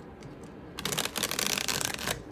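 A tarot deck being riffle-shuffled: the two halves of the deck flutter together as a fast, dense run of card-edge clicks, starting just under a second in and lasting about a second.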